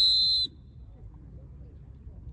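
A referee's whistle: one steady, shrill blast that cuts off sharply about half a second in. Faint voices and low background rumble follow.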